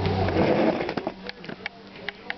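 Treadmill motor and belt running with a steady hum that stops about half a second in. A few light ticks and taps follow.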